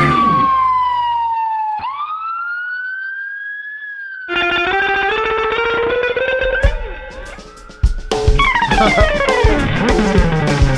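Blues-rock band recording: a sustained electric guitar note slides down, then a new note bends slowly upward. About four seconds in the band enters with chords, and drums join from about eight seconds in.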